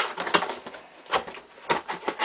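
A cardboard toy set box being handled and turned over: several sharp taps and knocks with light rustling between them.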